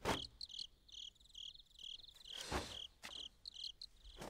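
Crickets chirping in a steady rhythm of about two to three short high chirps a second. A brief whoosh from a martial-arts movement comes about two and a half seconds in.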